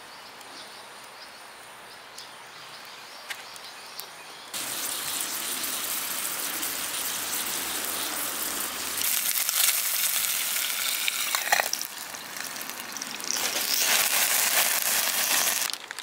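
Hamburger patty sizzling in a hinged hot-sandwich pan over a wood fire, with a few sharp pops. The sizzle comes in suddenly a few seconds in, grows louder past the middle and cuts off just before the end.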